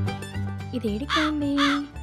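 Light plucked-string background music, with two short wavering calls about a second in.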